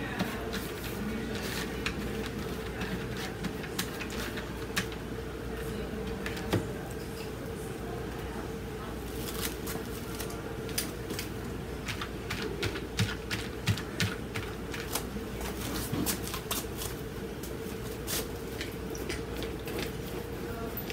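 Scattered light clicks and taps of small objects being handled, more frequent in the second half, over a steady low hum with a faint constant tone.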